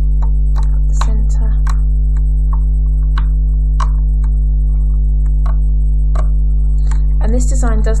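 Loom hook clicking against the plastic pins of a rubber-band loom: about nine sharp clicks at irregular intervals, over a loud, steady low electrical hum. A voice starts near the end.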